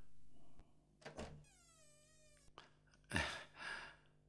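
A cat meowing once, one long call that falls slightly in pitch, after a short knock. Near the end a louder thump as the door is opened.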